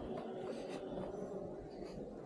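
Quiet, continuous scuffing and rustling of a hiker picking their way over loose boulders, with a few faint ticks from feet and gear on rock.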